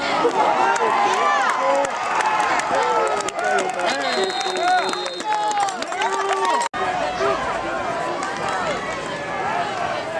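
Football crowd shouting and cheering, many voices overlapping, with a whistle blowing once for about a second about four seconds in. The sound cuts out abruptly for an instant near seven seconds, at a break in the recording.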